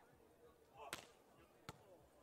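Two short, sharp slaps about three quarters of a second apart over near silence: a beach volleyball being struck by hand, the later one on the serve.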